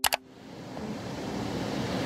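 A short click, then an even hiss of noise that swells gradually and cuts off abruptly.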